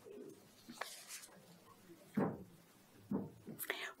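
Quiet room tone in a lecture hall, broken by a few short, faint murmurs from a person: one about two seconds in and two more near the end.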